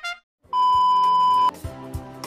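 A single steady electronic beep, one pure tone held about a second, cutting off suddenly. It comes after a short musical phrase ends and a brief gap, and other music starts right after it.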